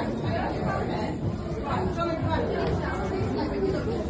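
Indistinct chatter of many people talking at once, a steady murmur of overlapping voices with no clear words.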